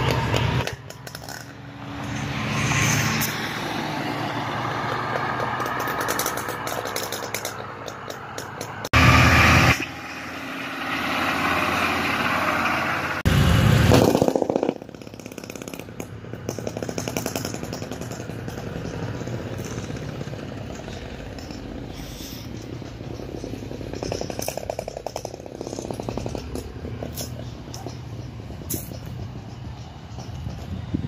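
Cars driving along a road, engines and tyre noise, broken by abrupt edits, with two short louder bursts about 9 and 13 seconds in and a quieter stretch after.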